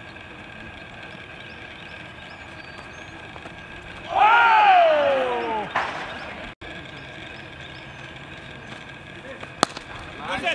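A man's long, loud shout about four seconds in, sliding down in pitch as it is held for nearly two seconds, over a steady outdoor background. A single sharp crack comes near the end.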